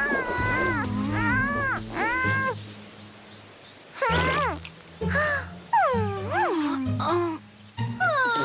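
Cartoon characters' wordless vocal sounds with swooping pitch, in two spells with a lull between, over soft background music.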